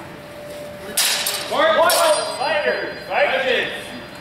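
Steel longsword blades clashing twice, a sharp clang about a second in and another just before two seconds, with the steel ringing faintly afterwards.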